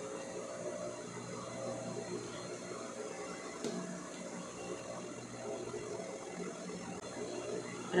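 Sewing machine motor switched on and running idle with a steady hum, not stitching, while fabric is handled and smoothed on the table; a single sharp click near the middle.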